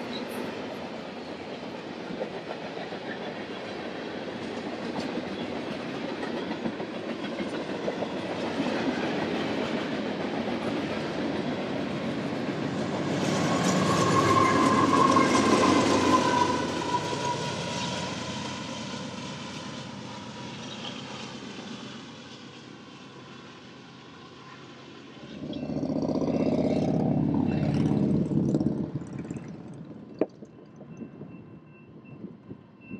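Freight train of autorack cars rolling past with steady wheel clatter. Midway a Union Pacific diesel locomotive passes close by, the loudest part, its engine carrying a steady tone that sags slightly in pitch as it goes by. Near the end a separate louder low rumble rises for a few seconds.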